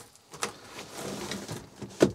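Pleated concertina privacy screen in a motorhome being slid shut across the bunk opening: a light click, then about a second and a half of soft sliding rustle.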